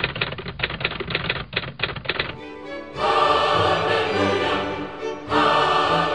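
Rapid typewriter-key clicking sound effect for about two seconds, then music comes in about halfway.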